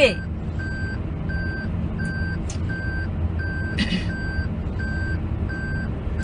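Electronic beeper sounding short, even beeps about once every 0.7 seconds, over a steady low hum.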